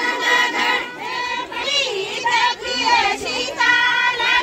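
A group of women singing a Kumaoni jhoda folk song together, many voices in unison with phrases rising and falling.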